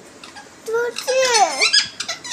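Indian ringneck parakeet loudly saying the mimicked word "badam" (almond) in a high, gliding, squeaky voice, starting a little under a second in.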